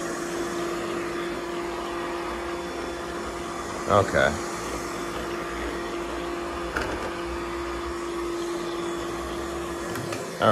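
Digital Essentials budget robotic vacuum cleaner running: a steady motor whir with one steady hum-like tone, and a single sharp click about seven seconds in.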